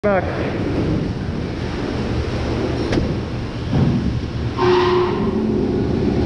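Steady machinery hum and noise in a large fish-handling room, with a sharp click about three seconds in and a brief steady tone near the five-second mark.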